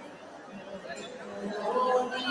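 Indistinct chatter of several people talking at once, rising in level toward the end after a brief lull.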